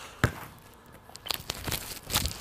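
A basketball thumping once on an outdoor court about a quarter second in, followed by several lighter taps and shoe scuffs near the end as the three-point shot is taken.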